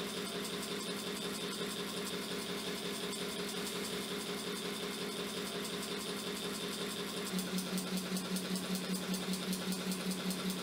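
Motor of a DIY persistence-of-vision LED fan display spinning its two LED blades: a steady mechanical hum and whir. Near the end it grows a little louder and pulses evenly, about three times a second.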